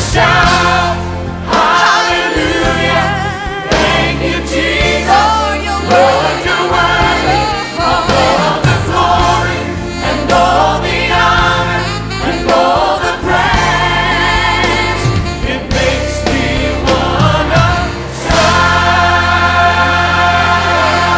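Gospel choir singing with instrumental accompaniment and a steady bass, the voices wavering with vibrato. Near the end the singing gives way to a steady held chord.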